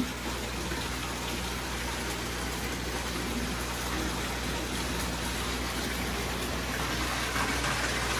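Steady fish-room background of aquarium pumps and running water: an even hiss of moving water over a constant low hum.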